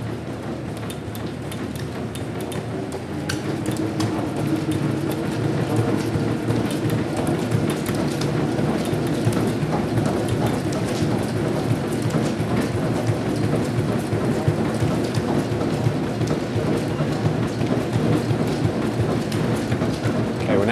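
Fast running footfalls on a motorised treadmill belt over the steady run of the treadmill's motor and belt, getting a little louder over the first few seconds as the belt speeds up for the next stage of the test.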